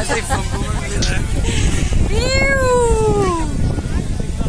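A person's long drawn-out vocal cry, high and playful, that rises briefly and then slides down in pitch for about a second and a half, starting about two seconds in.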